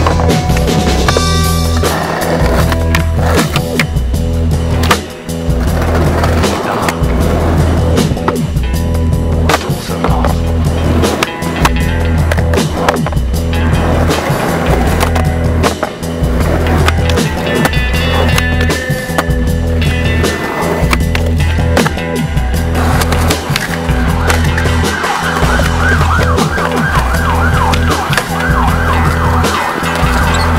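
A music track with a pulsing bass beat, mixed with skateboard sounds: wheels rolling on concrete and the board knocking and clacking as it pops and lands.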